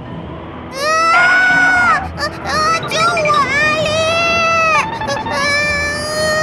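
A cartoon character's high voice crying out in four long, drawn-out wails, each held for a second or more, as it is blown away by the wind.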